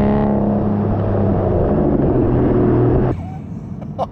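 Aston Martin DBS V12 exhaust note heard from beside the tailpipe as the car pulls in a lower gear under moderate throttle. Its note steps lower a little past two seconds in, and the loud sound cuts off suddenly about three seconds in.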